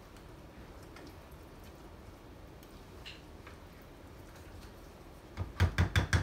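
A spoon working a thick, creamy mixture in a glass mixing bowl, faint with a few light clicks. Near the end comes a quick run of about eight sharp knocks, the loudest sound.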